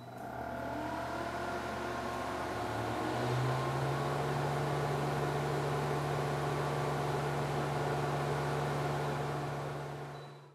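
CO2 laser cutter running a cut on clear acrylic: its fans and air assist spin up with a rising whine over the first few seconds, then settle into a steady hum with a rushing of air. The sound fades near the end.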